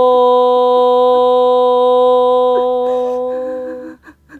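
A woman's voice holding one long, steady 'hooo' on a single pitch, the soothing '호' a mother blows over a hurt child, fading out just before the end.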